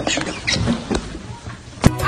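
A man laughing hard in short, high, squeaky gasps. A sharp click comes near the end.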